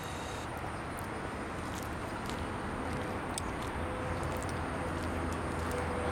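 Steady outdoor background noise with a low hum underneath and a faint thin tone near the end.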